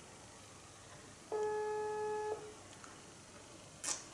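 A phone's ringback tone heard through its speaker: one steady tone lasting about a second, the signal that the outgoing call is ringing and has not been answered. A sharp click comes near the end.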